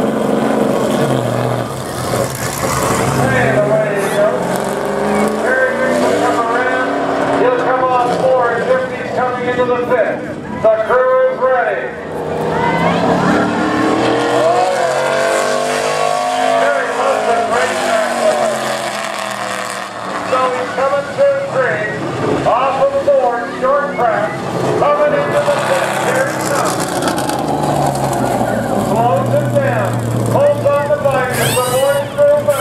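NASCAR Canadian Tire Series stock car's V8 engine, the No. 02 Ford Fusion, accelerating away from a pit stop and running hot laps on an oval. The engine note repeatedly climbs and drops as it revs through the gears and sweeps up and then down as the car passes.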